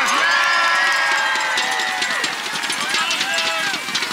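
Crowd cheering and clapping, with many overlapping voices whooping and yelling.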